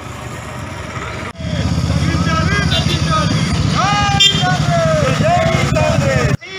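Several motorcycles running together in a slow rally, with people's voices calling out over the engines. The sound jumps louder about a second in.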